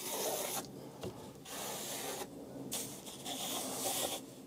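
Graphite pencil scratching across watercolour paper: three long strokes with short pauses between them.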